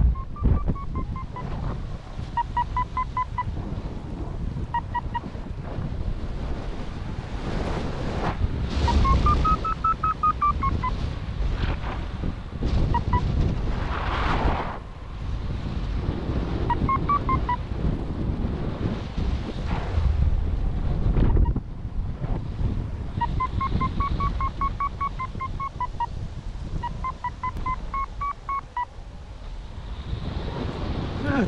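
Paragliding variometer beeping in runs of short tones whose pitch rises and falls in arcs, the sound it makes when the glider is climbing in lift. Underneath is a constant rumble of wind buffeting the microphone.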